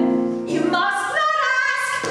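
A woman singing an art song with grand piano accompaniment, holding notes and moving to new pitches several times.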